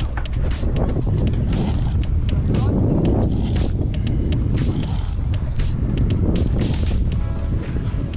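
A conventional fishing reel being cranked by hand, giving irregular clicks over a steady low rumble of boat engine and wind.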